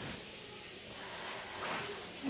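A steady hiss with no distinct events.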